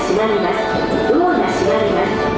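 A public-address announcement voice over a railway platform's loudspeakers.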